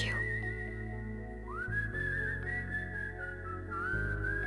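Film background music: a high, whistle-like melody holding long, slightly wavering notes, with a second line gliding up into a new phrase about one and a half seconds in, over sustained low chords.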